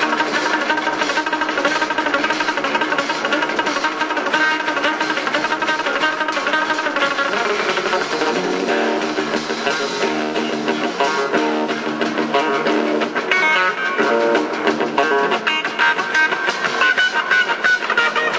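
Live rock band playing, an electric guitar to the fore with drums behind.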